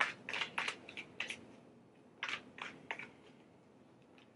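Tarot cards being handled: a series of short, crisp card clicks and rustles in two clusters, one at the start and one in the middle, as a card is drawn from the deck.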